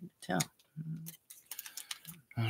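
Small clicks and crinkles from a stack of foil trading-card packs being handled and squared by hand. Several clicks come in the second half, and a brief murmured voice sounds twice in the first half.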